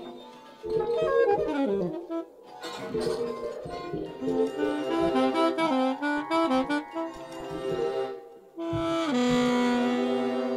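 Free-improvised jazz with a saxophone playing quick melodic runs, other instruments weaving around it, and a long held note near the end.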